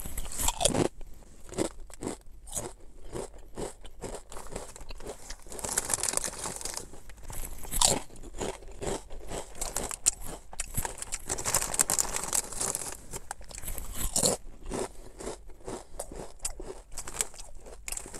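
Person biting and chewing Ruffles Flamin' Hot BBQ ridged potato chips: a steady run of crisp crunches, with a few louder bites.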